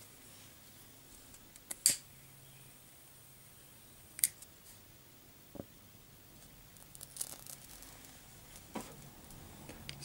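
A match struck and handled to light a Trangia spirit burner: a few short scrapes and clicks spread over several seconds, with one sharp, hissy scrape a little after four seconds in, against a quiet room.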